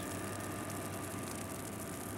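Boat engine running steadily: a low, even drone under a hiss.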